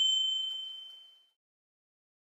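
A single high bell-like ding, struck just before and ringing out, fading away within about the first second.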